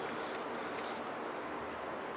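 Steady, very noisy outdoor background: an even hiss of ambient noise with no distinct events.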